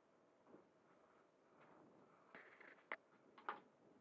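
Faint handling sounds as a black padded carry case on a wooden picnic table is opened: a short scrape, then a few light clicks and taps about three seconds in.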